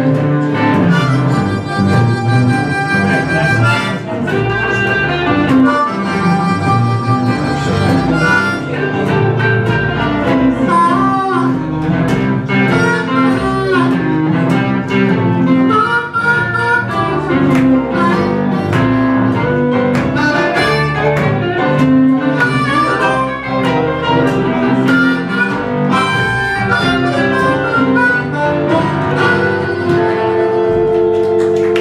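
Live blues band: a harmonica played cupped against a vocal microphone takes the lead, with some notes bent in pitch, over keyboard, guitar and drums.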